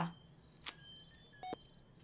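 Faint crickets chirping steadily in a high pulsing tone, with a single sharp click about two-thirds of a second in and a brief short tone around a second and a half in.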